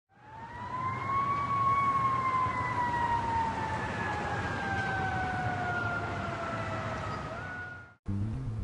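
An emergency vehicle siren wailing over a steady rumble of traffic. It rises for about a second, then falls slowly in one long sweep, fading in at the start and out at the end.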